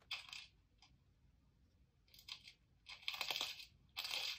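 Graphite pencil shading on paper: short spells of dry, scratchy strokes, one just after the start, another a little after two seconds, and a longer, louder run about three seconds in.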